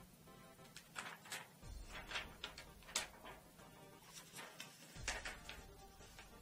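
Protective plastic film being peeled off a new laptop LED screen: an irregular string of crisp crackles and ticks over faint background music.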